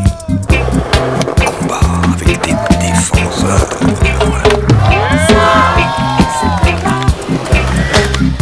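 Skateboard tricks on concrete, sharp clacks of the board popping and landing with wheels rolling, over a music track with a steady bass beat.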